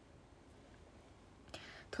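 Near silence: quiet room tone, then near the end a faint breathy hiss, like a breath drawn in just before speaking.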